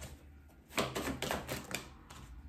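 A deck of cards being shuffled by hand: a quick run of light card flicks and clicks begins about a second in and stops just before the end.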